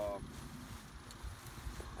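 A man's brief hesitation "uh" at the start, then low, irregular rumbling of wind on the microphone.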